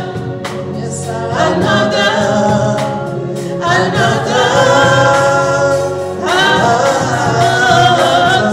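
Gospel worship singing, voices in long held phrases with a new phrase starting every two to two and a half seconds.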